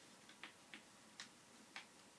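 Faint crisp clicks and crackles of folded origami paper being creased and pressed under the fingers, four short ones at uneven spacing over a quiet hiss.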